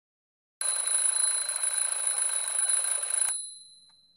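Twin-bell mechanical alarm clock ringing, starting about half a second in. After nearly three seconds it stops abruptly as it is switched off by hand, leaving a faint ring that dies away.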